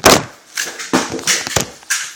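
Handling knocks and thumps as the camera is moved and set back down on a wooden table: one loud knock at the start, then a handful of softer knocks that fade.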